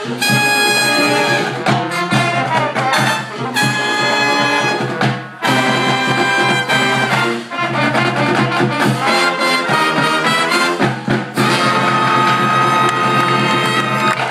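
Live brass pep band playing loudly: trumpets, saxophones and a sousaphone in a driving fight-song style number, with held notes and sharp accents.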